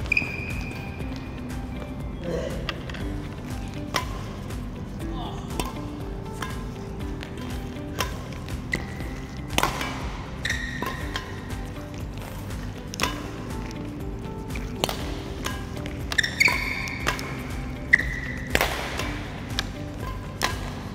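Badminton rackets striking shuttlecocks in a multi-shuttle feeding drill, a sharp crack every couple of seconds, with short squeaks of court shoes on the floor between hits, over steady background music.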